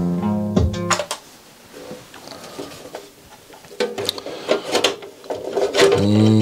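Music played back from a CD on a Samsung CDH 44R CD player, cut off about a second in as playback is stopped from the front panel. Scattered light clicks and knocks follow as the metal top cover is handled and fitted onto the player.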